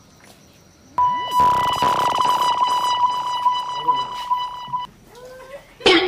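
A steady, high electronic beep starts about a second in and holds one pitch for about four seconds before cutting off, laid over loud voices or commotion. A short loud burst follows near the end.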